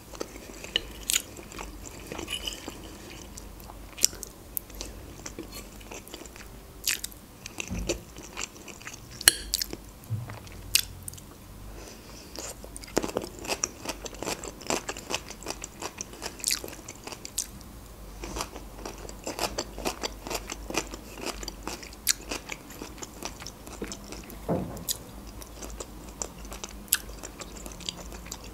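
Close-miked chewing of stuffed peppers: many sharp, irregular wet mouth clicks and smacks as the food is bitten and chewed.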